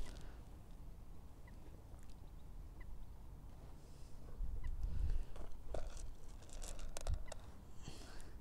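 Quiet lakeside ambience: a low rumble of wind on the microphone with a few faint short chirps, then light rustling and clicks of fishing tackle being handled in the second half.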